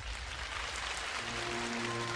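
Theatre audience applauding, a dense even clatter of clapping, with soft held music notes coming in underneath about a second in.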